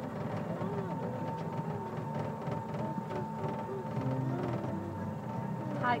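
The ride-on tractor's motor giving a steady whine as it runs along the track, with faint voices in the background.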